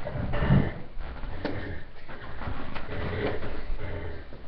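Scattered bumps, knocks and shuffling of children and a dog at play, with a low bump about half a second in and a sharp click about a second and a half in.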